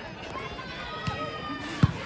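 Volleyball struck with a sharp slap near the end, the loudest sound, as a diving player digs the serve; a fainter knock comes about a second in. Crowd voices and chatter continue throughout.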